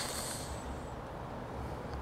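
Quiet room tone with a low steady hum and a faint, brief hiss near the start.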